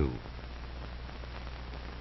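Steady hiss with a low hum from an old film soundtrack, in a pause after a man's narration ends on a last word.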